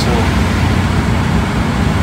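Steady low rumble of an idling diesel truck engine at the fuel island, while diesel is slowly pumped in to top off the tank.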